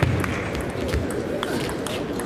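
Table tennis rally: the ball clicks sharply off the bats and table several times, with heavy footfalls from the players lunging, one at the start and another about a second in. Background voices carry through the hall.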